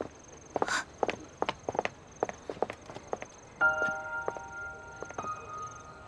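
Footsteps on stone paving, a run of sharp, irregular clicks. About three and a half seconds in, a soft held music chord comes in under them.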